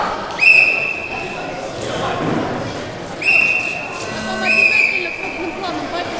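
Referee's whistle blown three times, each a steady, shrill blast of about a second: the first just under half a second in, then two close together about three and four and a half seconds in. Crowd voices carry on underneath.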